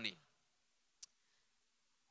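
A man's voice trails off at the start, then near silence broken by a single sharp click about a second in.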